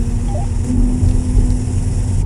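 Steady low rumble of a car driving slowly, heard from inside the cabin, with a faint steady hum and a constant hiss on top.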